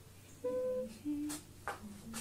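A woman humming a few short held notes, each lower in pitch than the one before.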